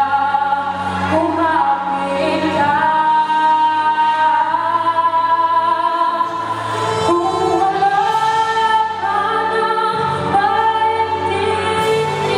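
A boy singing a Tagalog-language song into a handheld microphone over backing music, holding long notes that slide from one pitch to the next.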